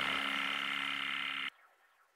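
Final sustained synthesizer chord of an ambient electronic instrumental, held steady after the bass fades away, then cut off abruptly about one and a half seconds in, leaving near silence.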